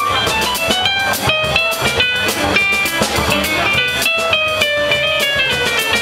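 Live Latin jazz: an electronic keyboard plays quick melodic runs over a low bass line and percussion.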